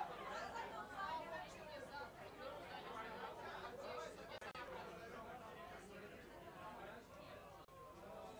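Indistinct chatter of several people talking at once, not loud, with no music.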